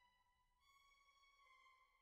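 Near silence, with only a very faint held violin-like string note that steps up to a higher note about half a second in.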